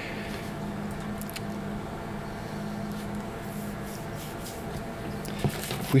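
Steady low hum with a few faint clicks.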